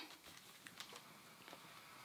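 Near silence, with faint rustling and a few soft ticks from cotton fabric and pins being handled on a table.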